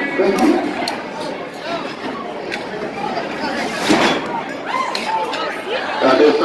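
Indistinct chatter of riders and people in the coaster station, with no clear single voice, and a short rushing hiss about four seconds in.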